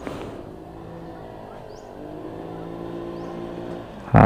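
Kymco Super 8 scooter engine running as it comes closer, its note dipping slightly, then stepping up a little about halfway and growing louder toward the end. It keeps running under throttle without stalling now that its carburettor jets have been cleaned.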